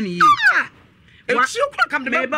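Heated talk between people, with a shrill, falling exclamatory cry just after the start. A short pause follows, then talking resumes.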